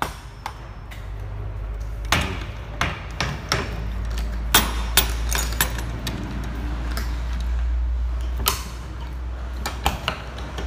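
Metal knocks and clanks from the steel cargo box and tailgate of a light truck being handled, a dozen or so sharp hits between about two and nine seconds in, over a steady low rumble.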